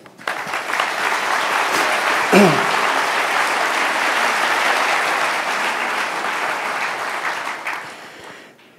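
Large audience applauding, starting right away and tapering off near the end, with one short voice call rising above it about two and a half seconds in.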